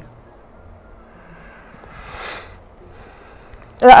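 Quiet studio room tone with one soft, breathy puff about two seconds in, like a sniff or sigh; near the end a woman sharply says "no" (lā).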